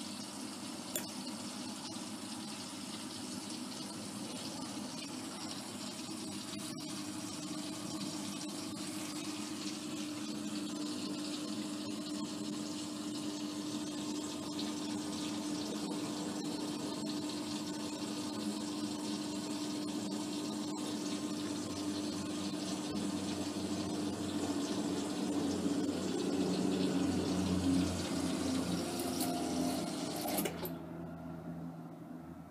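Hotpoint Aquarius WMA54 front-loading washing machine running with water rushing through it and a steady hum that grows louder over the last few seconds. The machine would not spin or drain properly, which the owner put down to worn motor brushes or a failing motor.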